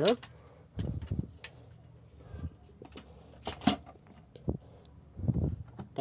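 Metal amplifier case parts being handled and set down on a workbench: a few scattered knocks and clunks, with a sharp click about three and a half seconds in.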